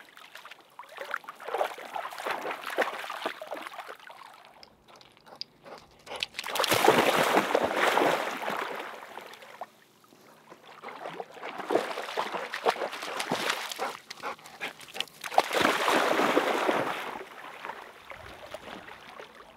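Shallow lake water sloshing and splashing as a dog wades and swims through it close by, in several surges a few seconds long with quieter gaps between.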